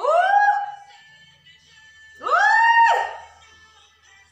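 A woman's voice sliding up into a high held note twice, each lasting under a second, the second about two seconds after the first, over faint pop music.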